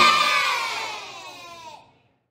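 A group of young children shouting a cheer together, one long drawn-out shout that falls in pitch and fades, then cuts off suddenly near the end.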